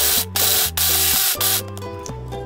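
Small electric food chopper pulsed in several short bursts, its blade chopping pistachios and almonds into little pieces; the pulses stop about a second and a half in.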